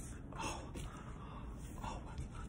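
A man breathing in sharply twice, close to the microphone, about half a second in and again near the end, over a faint steady low hum.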